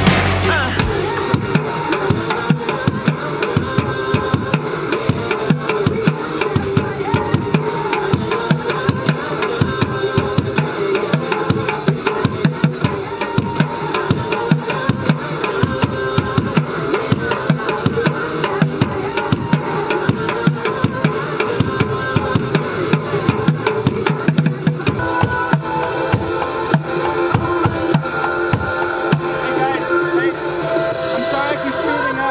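Improvised street drum kit: drumsticks beating fast, steady rhythms on empty plastic water-cooler jugs and plastic buckets, played along to a recorded pop song.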